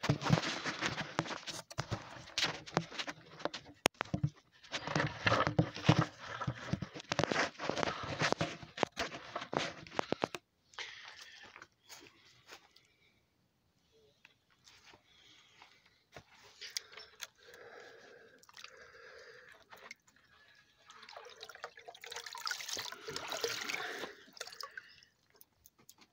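Loud knocks, clatter and rustling for about the first ten seconds, then quieter irregular water sounds: splashing and dripping in a plastic bucket of water used for gold panning.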